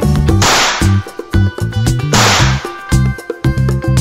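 Upbeat background music with two sudden hissing, whip-like sound effects about a second and a half apart, each fading over about half a second.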